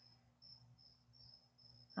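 Faint cricket chirping: short, high chirps at irregular intervals over a low steady hum.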